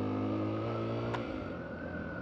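Suzuki DR-Z250's air-cooled single-cylinder four-stroke engine running at a steady pace on a dirt trail, easing off about a second in. A single sharp tick, such as a stick or stone striking the bike, is heard at about the same moment.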